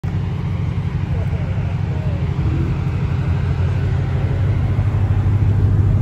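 Chevrolet C8 Corvette V8 idling steadily with a deep, even low rumble.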